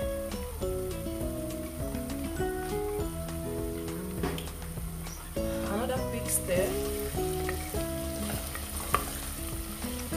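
Red onions, bay leaves, thyme and rosemary sizzling in hot oil in a pot, with a wooden spoon starting to stir them about six seconds in. Background music with a moving melody plays throughout.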